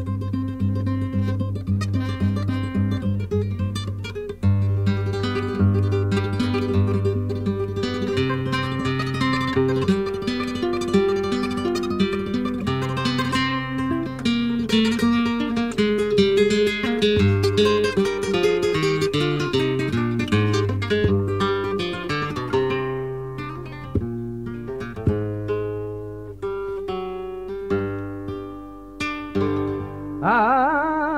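Solo flamenco guitar playing the introduction to a malagueña.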